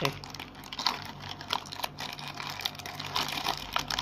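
Cardboard box and clear plastic packaging being handled: irregular rustling, crinkling and small clicks as a portable hard drive in its plastic tray is worked out of its retail box.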